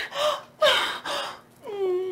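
A woman gasping and breathing hard in two breathy bursts, then a drawn-out voiced sigh that drops in pitch and holds near the end.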